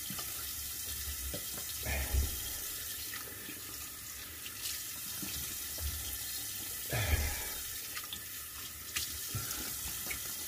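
Tap running into a bathroom sink while water is splashed onto the face to rinse after a shave, with louder splashes about two seconds in and again about seven seconds in.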